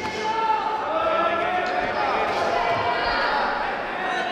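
Coaches and spectators shouting over a full-contact karate bout. Dull thuds of punches and kicks landing on the fighters come through underneath.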